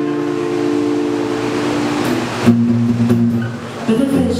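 Live acoustic song in a gap between sung lines: acoustic guitar chords ringing on, with a new chord struck about two and a half seconds in.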